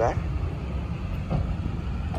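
Low, steady rumble of street traffic.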